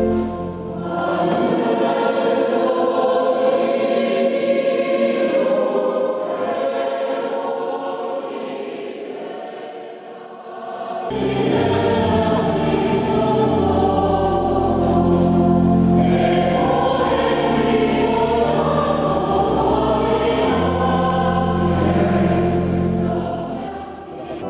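Mixed church choir singing a hymn with organ accompaniment. The organ's low notes drop out for several seconds and come back about eleven seconds in as the singing grows fuller.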